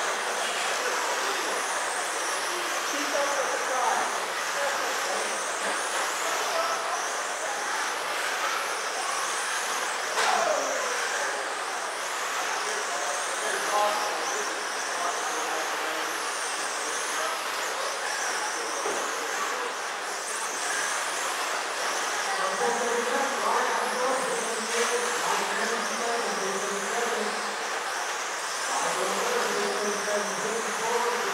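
Several 1/10-scale electric RC sprint cars racing around a dirt oval, their motors giving a high whine that rises and falls as each car passes.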